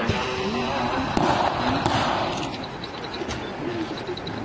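A few sharp shots of blank gunfire from re-enactors' rifles, the loudest about a second and two seconds in, over people's voices.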